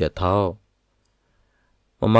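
A voice speaking a short phrase of narration, with a sharp click at the very start. Then silence for about a second and a half.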